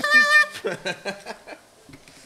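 A high-pitched, drawn-out vocal squeal for about half a second, followed by fainter talk that dies away.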